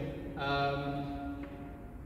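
A man's voice holding a drawn-out hesitation sound on one steady pitch for about a second, then trailing off into the reverberation of a large stone church.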